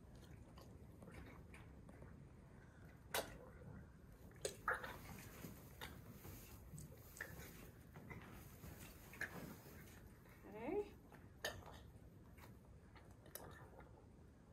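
Quiet handling sounds while a newborn calf is tube-fed colostrum: a few sharp clicks and faint rustling, with a short pitched sound about ten and a half seconds in.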